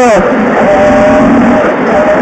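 Rally car engine heard from inside the cockpit, held at a steady note through a corner.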